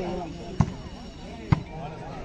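A volleyball being struck during a rally: two sharp smacks about a second apart, over voices and chatter from players and spectators.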